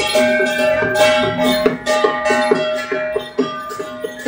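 Traditional Taiwanese temple-procession percussion: drum and gongs beating a fast, regular rhythm of about four strokes a second, over sustained ringing tones.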